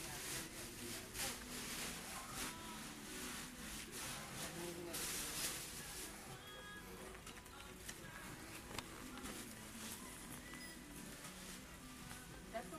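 Shop ambience: indistinct voices of shoppers and staff with faint background music, and a few brief rustles.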